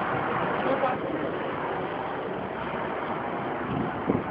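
Steady rushing wind noise on the microphone while riding a bicycle.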